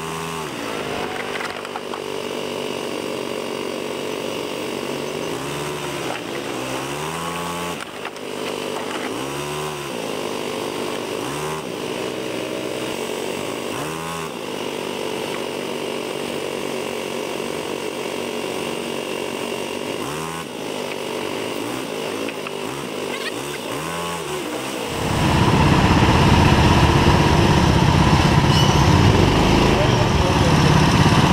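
Small single-cylinder go-kart engine heard from on board, its pitch climbing and dropping every few seconds as the throttle is worked through the corners. About 25 seconds in, a much louder, rougher and steadier noise suddenly takes over.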